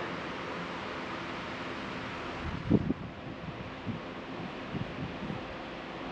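Steady rushing background noise, easing slightly about halfway through, with a brief low sound near the middle.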